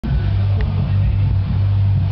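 Aquarium pump running with a steady, loud low hum.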